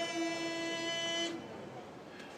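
A sumo yobidashi's drawn-out, sung call of a wrestler's name, held on one steady pitch and cutting off about 1.3 seconds in, followed by faint hall murmur.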